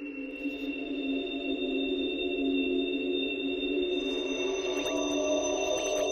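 Arturia Pigments synthesizer playing the 'Light Poles' atmosphere preset, a granular, sample-based drone of steady low and high tones held together. It swells up over the first second, and a higher tone joins about four seconds in.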